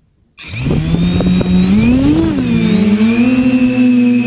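Quadcopter brushless motors and propellers spinning up from a standstill about half a second in, a loud whine whose pitch rises, dips and rises again as the throttle is worked, then settles to a steady pitch as the quad lifts off.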